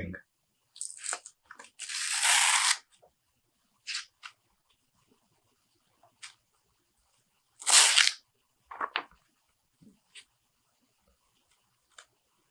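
Glossy pages of a heavy hardcover comic omnibus being turned by hand, each turn a rustling swish of paper. The two loudest turns come about two seconds in and about eight seconds in, with smaller flicks and rustles between.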